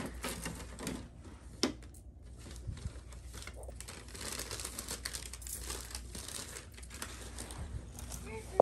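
Tissue paper and a paper gift bag crinkling and rustling as the paper is pulled out, with irregular crackles and a sharper crackle about one and a half seconds in.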